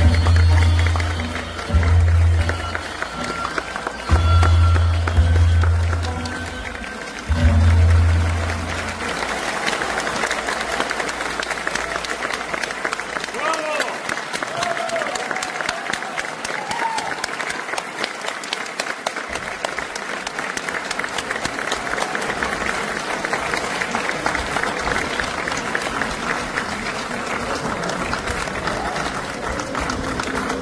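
Accompaniment music for a Korean fan dance (buchaechum) with four heavy low booms in the first nine seconds. After that, an audience applauds steadily, with a few cheers, for the rest of the time.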